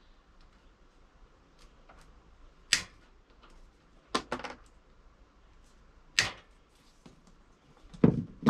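A few sharp clicks and snaps from hand tools and wire ends while furnace wiring is worked on: one about three seconds in, a quick cluster just after four seconds, and another about six seconds in.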